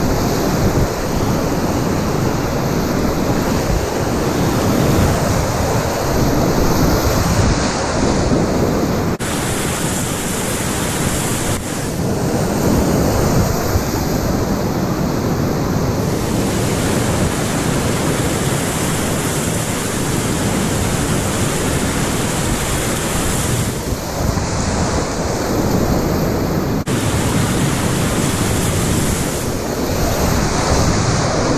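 Loud, steady rush of class IV whitewater rapids heard up close from a packraft running them, with wind buffeting the microphone.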